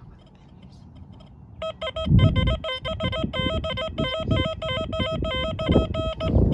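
XP Deus II metal detector sounding its target tone as a coin is passed over the coil: a high, warbling beep that starts about one and a half seconds in and steps rapidly up and down in pitch, signalling a target that reads 78 on the screen. Low rumbling knocks sit under it, loudest about two seconds in.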